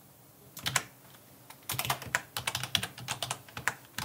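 Typing on a computer keyboard: a few keystrokes just before the one-second mark, then a quick, dense run of keystrokes from a little before halfway to near the end.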